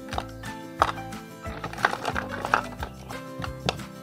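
Large wooden dice cut from 4x4 lumber clunking into a plastic basket and knocking against each other: several separate hollow knocks a second or so apart, over background music.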